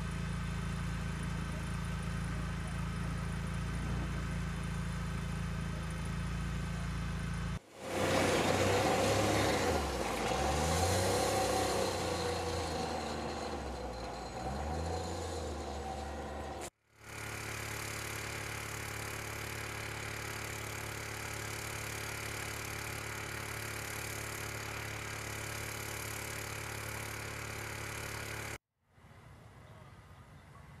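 A vehicle engine running steadily, heard in separate cut shots. In the louder middle shot the engine note rises and falls as the vehicle drives.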